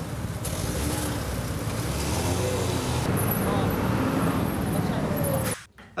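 City street traffic noise: cars and a minivan driving along a busy road, a steady noise that cuts off suddenly near the end.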